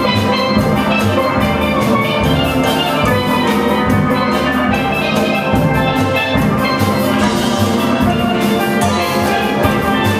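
Steel drum band playing live: steel pans of several ranges carrying the tune over bass pans and drums, in a steady, lively rhythm.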